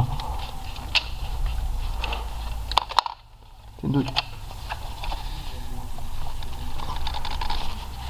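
Hand tools clicking and scraping against plastic vacuum-line connectors on an engine's intake manifold as stuck, dried-on tubes are pried and wiggled loose, over a steady low hum. The sound drops out briefly about three seconds in.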